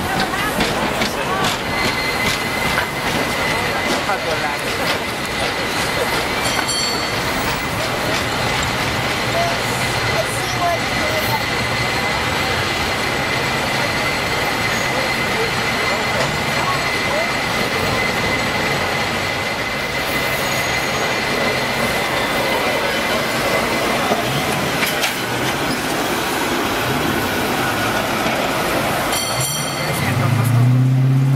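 San Francisco cable car street noise: a steady rumbling clatter with a thin, steady high whine through the first two-thirds. There is a brief metallic ring about seven seconds in and another just before the end.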